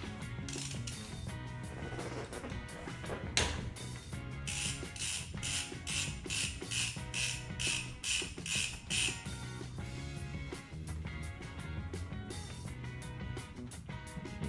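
Socket ratchet clicking in a quick run of about a dozen strokes, starting a few seconds in and lasting about five seconds, as it loosens a pit bike engine's oil drain bolt. Background music plays throughout.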